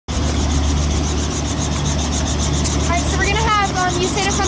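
Robinson R44 helicopter running on the helipad, its six-cylinder piston engine and rotor giving a steady low hum with a rapid, even beat. A voice speaks from about three seconds in.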